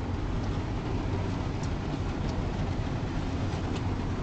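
Steady low rumble inside a car's cabin, with the engine running, and a few faint ticks of rain on the car.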